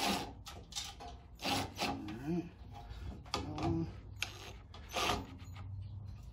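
Cordless drill with a socket driver run in several short bursts, tightening the bolts that hold a gas regulator to a generator frame.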